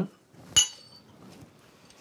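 A single metallic clink with a short high ring: a hafted bronze hammer set down among bronze axe blanks on a wooden workbench, metal knocking on metal.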